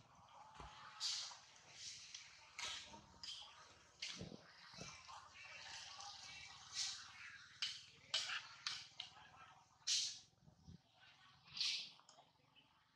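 Long-tailed macaques making a string of short, sharp high-pitched calls, roughly one a second, loudest about ten seconds in and again near the end.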